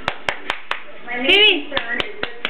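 Light hand claps, a quick run of sharp claps about five a second that pauses and then starts again. About one and a half seconds in comes a brief high-pitched voiced call that rises and falls in pitch.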